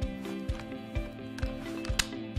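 Background music: sustained chords over a steady beat of about two thumps a second.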